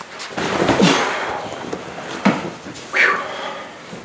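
Black leather couch rubbing and squeaking as one man slides over and another sits down beside him, with a few short squeaks that slide in pitch.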